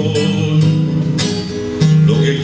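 Acoustic guitar strummed as the accompaniment to a Cuban trova song, with a few sharper strokes near the middle.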